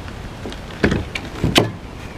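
Two short knocks, about two-thirds of a second apart, from the plastic kayak hull being handled on the tables, over light outdoor wind.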